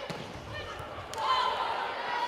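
Indoor volleyball rally in a gym: a few faint ball hits and players' shoes squeaking on the court over low crowd noise, the squeaks starting about a second in.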